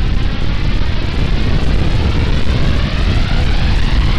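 A loud, steady low rumbling drone with a faint sweeping hiss above it, part of the sound-effect opening of an electronic synth track.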